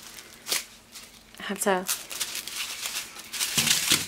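Small plastic bags of diamond-painting drills crinkling and rattling as they are handled, busiest in the second half, with a short click about half a second in.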